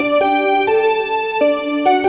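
Yamaha portable keyboard played in chords, a new chord struck about every half second and held until the next.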